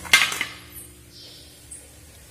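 A single sharp clink of steel kitchenware just after the start, with a short ring, then low kitchen room sound with a faint hum.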